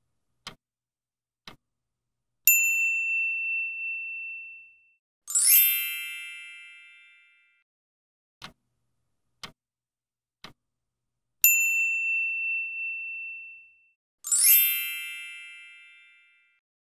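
Quiz-timer sound effects: clock ticks a second apart counting down, then a bell ding that rings for about two seconds as time runs out, then a bright chime that fades away. The same sequence comes around again about nine seconds later.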